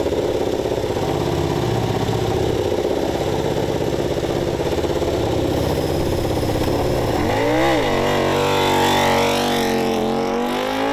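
Two-seater Ducati MotoGP race bike's V4 engine idling, with one quick blip of the throttle about seven and a half seconds in. The revs then hold a little higher and start to rise near the end as the bike pulls away.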